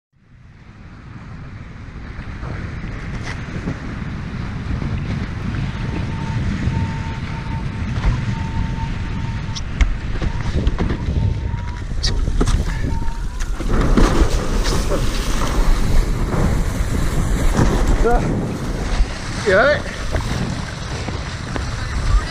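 Wind buffeting the microphone and water rushing past while a windsurfer sails fast on a hydrofoil board, fading in at the start. A thin steady whistle runs through part of it.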